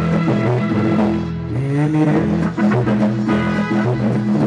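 Music with guitar and bass, playing steadily.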